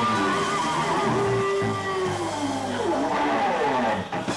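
Live blues band playing, with an electric guitar lead that wavers and bends in pitch, then slides down in falling glides near the end.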